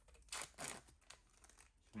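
Faint rustling and crinkling in a few short bursts within the first second, from a hand working at a dog's mouth and fur while swabbing its cheek.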